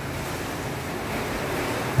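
Steady rushing noise with a faint low hum, slowly getting a little louder.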